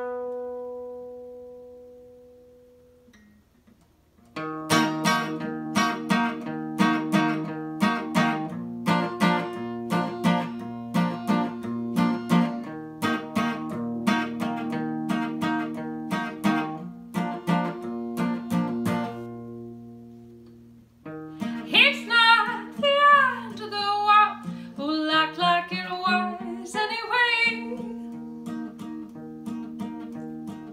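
Acoustic guitar: a chord rings out and fades, then after a brief pause strummed chords start up as the song's intro. About two-thirds of the way in, a woman starts singing over the guitar.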